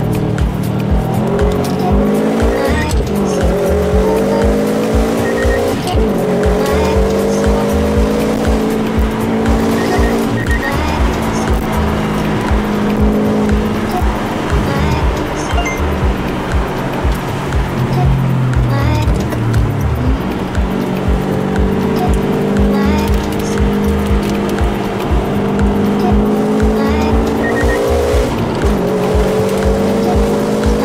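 Subaru Impreza WR1's turbocharged flat-four pulling up through the gears, heard from inside the cabin. The engine note climbs for a few seconds and then drops at each upshift, several times, and falls away once near the middle as the car slows. Music with a steady beat plays under it.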